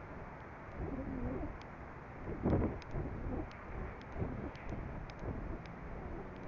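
Wind rushing over the onboard microphone of an Estes Astrocam descending under its parachute, with low wavering hoot-like tones rising and falling, loudest about two and a half seconds in, and a few faint ticks.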